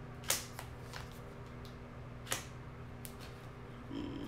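Tarot cards being handled and laid down on a wooden table: a few short sharp clicks and snaps, the loudest a little past two seconds in, over a faint steady hum.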